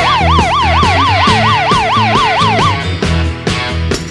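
Ambulance siren in its fast yelp, the pitch sweeping up and down about four to five times a second, over rock music; the siren stops about two and a half seconds in.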